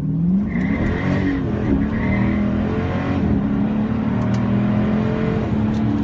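2016 Dodge Charger R/T's 5.7-litre HEMI V8 under hard acceleration from a standstill, heard from inside the cabin. The engine note climbs in pitch in several steps, dropping back at each upshift, then runs steadier near the end.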